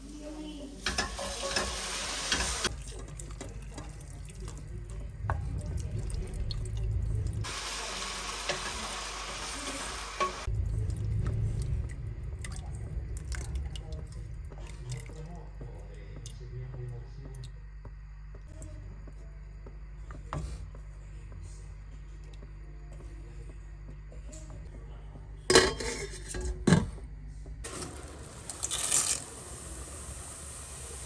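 Cooking sounds from a pot of meat ragù on the stove: tomato sauce poured in, the sauce stirred and bubbling, and milk added. A few sharp knocks of a utensil against the pot come near the end.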